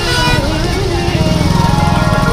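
A vehicle engine idling close by, with a fast, even low pulsing, under people's voices.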